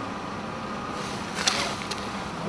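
Steady outdoor street background noise, with a brief rustling scrape about one and a half seconds in and a small click just before the end.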